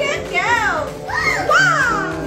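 High-pitched voices calling out in long rising-and-falling swoops, about three in two seconds, over steady background music.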